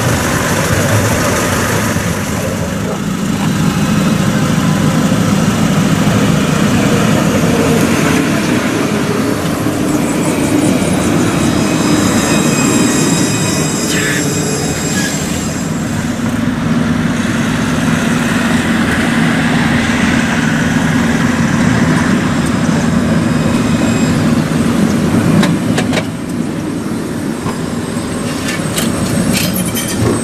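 Alstom Citadis low-floor trams running past on their rails, a steady noise of motors and wheels mixed with street traffic. A thin high tone sounds for a few seconds before the middle, and sharp clicks come near the end as a tram passes close.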